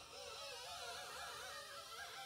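Gloved hand rubbing over the barrel of an alloy wheel, squeaking with a faint, wavering pitch. The surface is squeaky clean, stripped by panel wipe and Gyeon Prep ready for ceramic coating.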